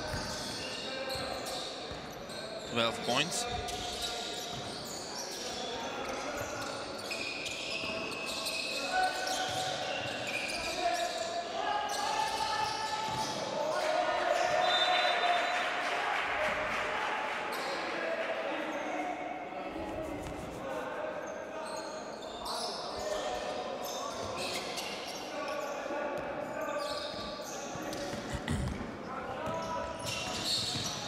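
Basketball dribbled on a hardwood court during live play, with indistinct voices of players and people courtside echoing in a large sports hall.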